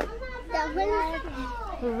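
A young child's high-pitched voice talking or babbling, with no clear words.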